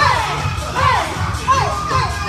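A group of people shouting together in short, falling cries, about four in two seconds, in time with their Muay Thai kicks. Under them runs workout music with a steady beat.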